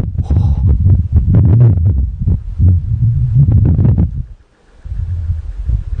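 Wind buffeting the microphone: a loud, uneven low rumble. It drops away briefly about four and a half seconds in, then returns.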